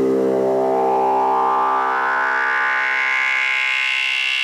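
Electronic dance music breakdown with no drums: a single held synthesizer chord that grows steadily brighter as a slow upward sweep rises through it.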